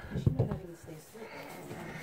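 Faint, muffled speech, with a few light knocks and scrapes about a quarter-second in from a hand reaching into a drywall box opening.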